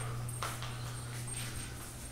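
A dog making faint sounds in the house over a steady low hum.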